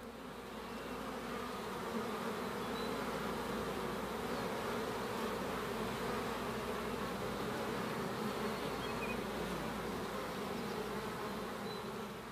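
Many bees buzzing together in a steady hum that fades in over the first second.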